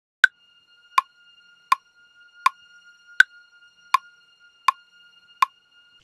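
A DAW metronome clicking steadily about 82 times a minute, the first click of every four higher-pitched, under a single high string-synth note held steadily. The strings play just one note, meant for an eerie feel.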